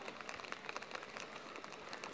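Light rain pattering: a dense, irregular crackle of small drops.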